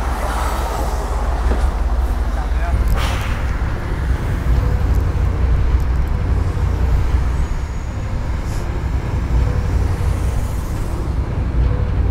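Vintage Chevrolet pickup truck driving: a steady low engine rumble with road noise. The rumble grows stronger about three seconds in, with a brief noise at the same moment.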